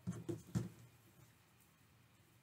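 A few light knocks and a brief rustle from hands working a crocheted flower, its metal snap clip and a yarn needle, bunched in the first half second or so, the sharpest knock about half a second in; faint room tone after.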